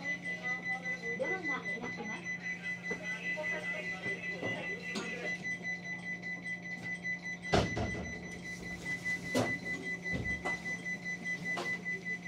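Stationary 223-series electric train heard from the cab: a steady low hum and a thin, steady high whine, with faint voices early on and two sharp clicks, about seven and a half and nine and a half seconds in.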